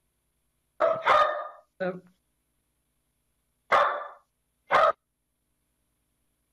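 A pet dog barking about five times, with short gaps of silence between the barks, heard over a remote video-call link.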